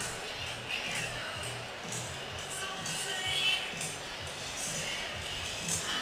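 Music playing in a stadium over the steady noise of a large crowd.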